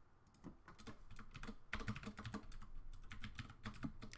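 Typing on a computer keyboard: a few scattered keystrokes, then a fast run of them from a little under halfway through.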